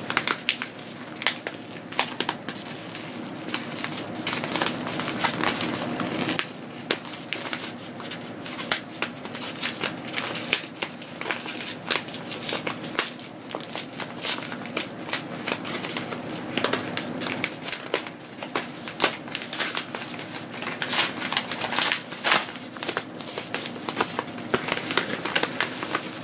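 Padded kraft-paper mailer crinkling and crackling as it is handled and worked open by hand, in a run of irregular rustles and sharp crackles.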